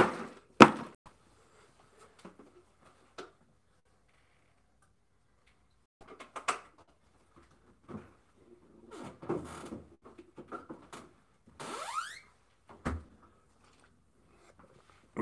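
A drink carton shaken with two sharp knocks, then scattered handling noises off to the side. Near the end, a refrigerator door gives one short rising squeak and shuts with a thunk.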